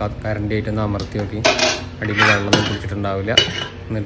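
Metal spoon scraping and clinking against the inside of a metal cooking pot as cooked rice is stirred, with a few louder scrapes in the second half.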